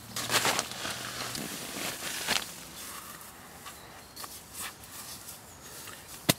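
Hiking boot laces being pulled through the boot's hooks and eyelets and tightened by hand: a few short swishing rustles, the loudest about half a second in and another just after two seconds, then quieter handling sounds.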